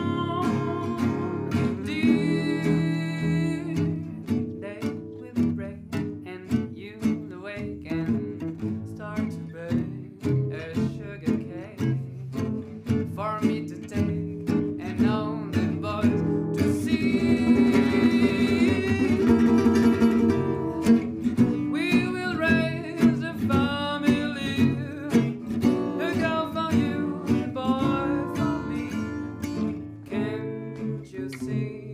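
A man singing a song to his own acoustic accompaniment on a Selmer-Maccaferri-style gypsy-jazz guitar with a D-shaped soundhole, strumming steady chords in jazz manouche style.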